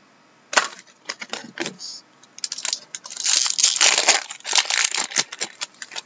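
Hockey trading cards and their packaging being handled by hand: a quick run of clicks, rustles and crinkles, densest and loudest in the middle, then thinning out near the end.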